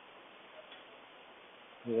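Low steady microphone hiss with one soft computer-mouse click less than a second in, then a man's voice starts near the end.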